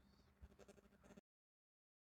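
Near silence: faint room tone, cutting off to complete silence about a second in as the audio ends.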